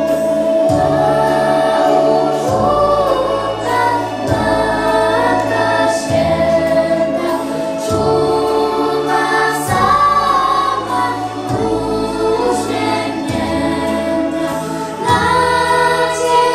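Children's choir singing a Christmas carol, with instrumental accompaniment carrying a bass line that changes note every second or so.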